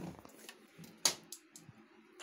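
A few light, scattered knocks and clicks, the loudest about halfway through, over a faint low hum.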